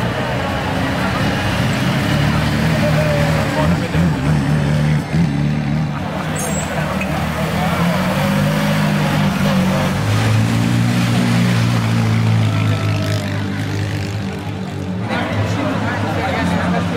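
A 1927 Bugatti Type 40's four-cylinder engine running at low revs as the car creeps along, heavier for a few seconds past the middle, with crowd chatter all around.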